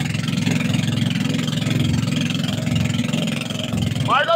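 Outrigger boat's engine running steadily under way, an even low rumble with a steady hiss of wind and water above it.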